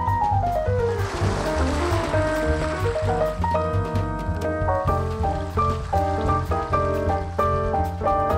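Instrumental jazz piano music over a low bass line, opening with a descending piano run. Underneath, ocean surf washes in, swelling in the first few seconds.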